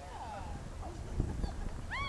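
A pony trotting on arena sand, its hooves giving a few low thuds just over a second in, with children's high, short cries rising and falling in pitch.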